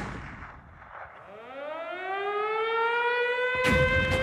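Air-raid siren winding up: a wail that starts about a second in, climbs in pitch for about two seconds and then levels off into a steady tone.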